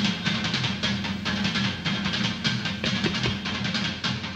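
Live psychedelic progressive rock jam: electric guitar and bass over a busy drum kit, played densely and without pause.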